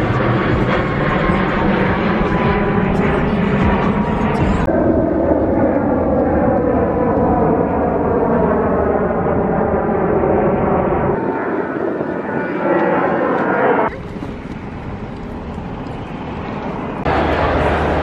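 Outdoor ambience in short edited cuts: crowd chatter, then an airplane passing overhead, its sound gliding slowly down in pitch. Near the end it cuts to the steady hum of a busy indoor hall.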